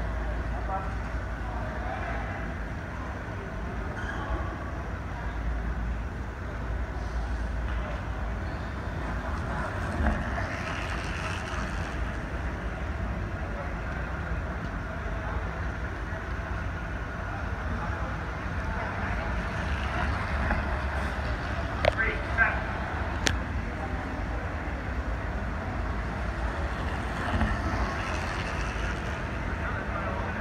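Indoor velodrome hall ambience: a steady low rumble with background chatter of people, and a few sharp clicks about two-thirds of the way through.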